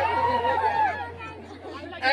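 A man's voice over the stage PA, holding a drawn-out vocal note for about the first second before fading into low background chatter, with a steady low hum underneath.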